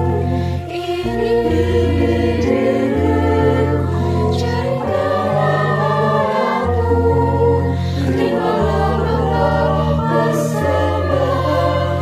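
Mixed choir of young men and women singing an Indonesian church hymn in harmony, accompanied by organ with sustained bass notes that change every second or two.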